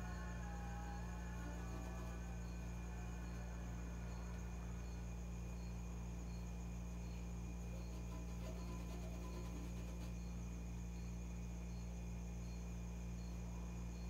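Quiet room tone: a steady low hum under a faint, short high chirp that repeats evenly about every half second, typical of a cricket.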